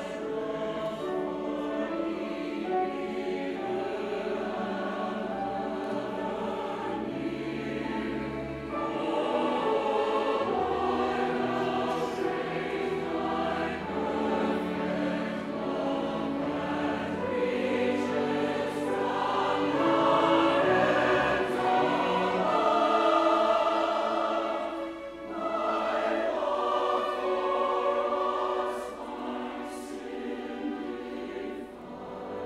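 A large mixed choir singing with an accompanying string orchestra. The music swells louder about a third of the way in and again past the middle, then dips briefly before picking up again.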